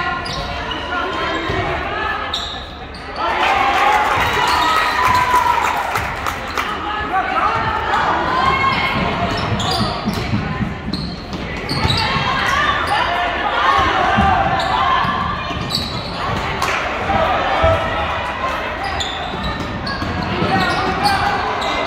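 Spectators and players talking and shouting in a gym over a basketball bouncing on the hardwood court, with the echo of a large hall.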